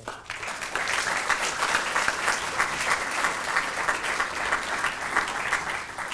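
An audience applauding, with many hands clapping. The applause builds up within the first second, then stays steady.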